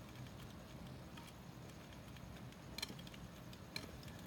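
Small DC motor overdriven at 12 V: a faint, steady low hum with a few sharp crackling clicks, the sign of a motor sparking as it burns out.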